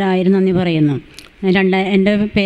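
A woman's voice through a microphone, in long phrases held on a nearly even pitch, with a short pause about a second in.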